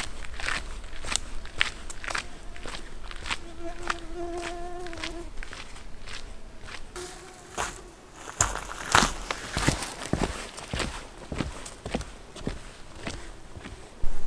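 Hiking boots crunching on a gravel forest path, roughly two steps a second. A flying insect buzzes briefly about four seconds in.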